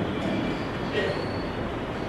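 Steady background noise with a faint high whine, no speech.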